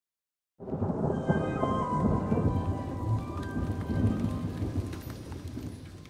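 Low rumbling with a dense rain-like hiss, like a thunderstorm, with a few faint held tones above it. It starts abruptly about half a second in and fades away toward the end.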